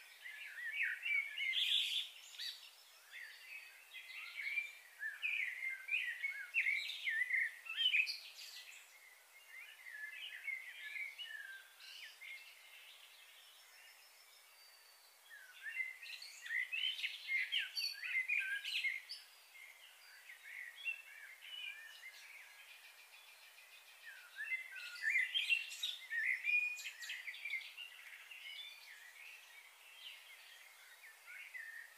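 Small birds chirping and calling busily, in three bouts of rapid short chirps separated by quieter stretches, over a faint steady outdoor hiss.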